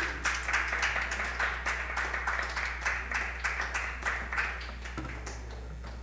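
Small audience clapping at the end of a song, separate hand claps easy to pick out, thinning out and dying away about five seconds in.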